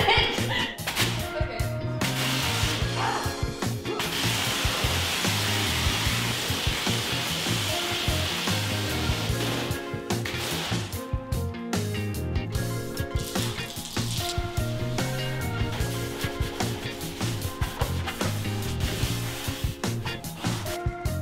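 Background music with a steady bass line. From about 4 to 10 seconds in, a pressure washer's spray hisses over it.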